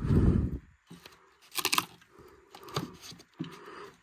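Plastic DVD cases and discs being handled and shifted on a cardboard box, with a sharp clatter about a second and a half in and a few lighter clicks and rustles after it.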